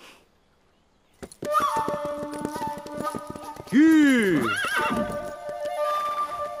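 A horse whinnies loudly about four seconds in, one call rising and falling in pitch over under a second, then a shorter call right after. Hooves clip-clop over background music that starts about a second and a half in.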